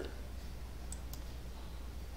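Two faint computer mouse clicks about a second in, over a steady low hum.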